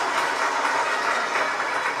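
Recorded applause, a steady sound of many hands clapping, played as a sound effect in answer to a call for a round of applause.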